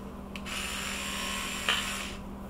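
Electric toothbrush buzzing as its bristles scrub coloured cocoa butter into a polycarbonate mould cavity. The buzz starts about half a second in and stops just before the end, with a light knock near the end.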